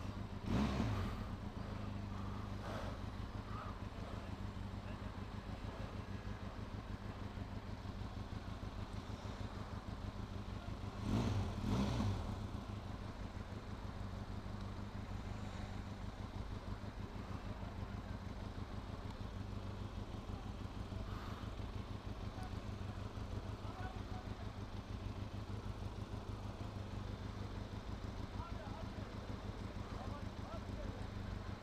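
Benelli TRK 502X's parallel-twin engine idling steadily at a standstill, with two brief louder sounds: one about half a second in and one around eleven seconds in.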